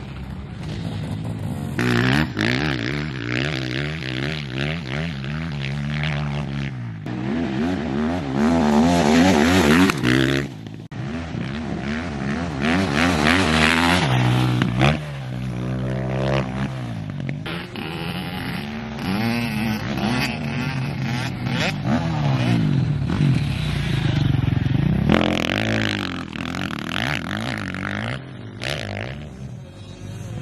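Motocross dirt bikes revving hard and easing off on a dirt track, engine pitch climbing and dropping over and over. The sound breaks off and changes abruptly several times.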